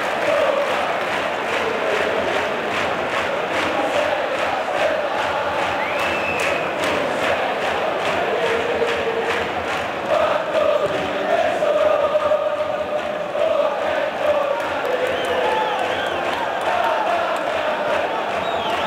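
Stadium crowd of Cesena ultras chanting together, a sustained sung chant over the general crowd noise. A steady rhythmic beat runs under the singing through the first half.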